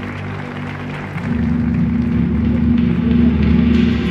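Dramatic introduction music played over the stadium sound system with the big-screen lineup video: held low tones, then about a second in a louder, deep sustained chord comes in and swells.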